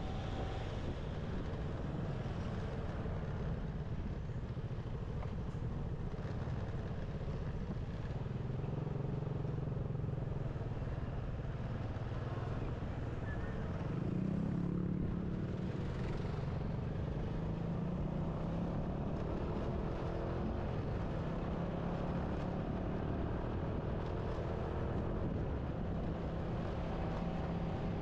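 Motorcycle ridden along a road: its engine runs steadily under continuous road noise, and the engine note climbs about 14 seconds in as it speeds up.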